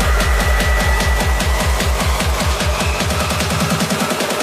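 Electronic dance music build-up: a kick-drum roll that gets faster and faster, with a held high synth note at first and the deep bass falling away near the end.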